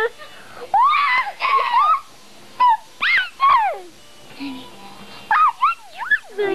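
A young girl's high-pitched squeals: short cries that swoop up and down in pitch, coming in several separate bursts with pauses between.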